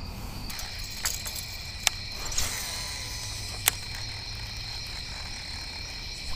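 Steady, high-pitched chorus of night-singing insects, with a few sharp clicks and a brief hiss partway through.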